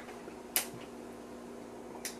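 One sharp click of a toggle switch on an IMSAI 8080 front panel about half a second in, over the steady low hum of the running computer.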